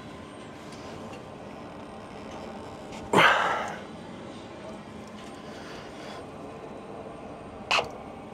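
Steady low background noise with one loud, sharp breath out about three seconds in, as a person strains to hand-loosen a hot, tight fuel filter bowl. A shorter huff of breath comes near the end.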